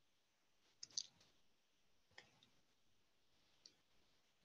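Near silence: faint room tone broken by a few short clicks, a quick pair about a second in, another just past the middle and a fainter one near the end.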